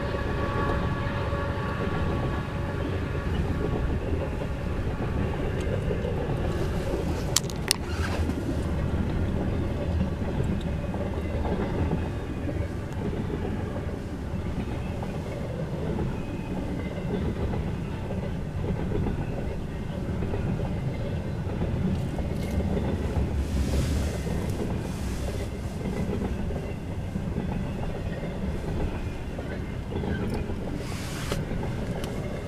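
Freight train cars rolling past, a steady rumble with the clickety-clack of wheels on the rails. A held tone fades out over the first few seconds, and two sharp clicks come about seven and a half seconds in.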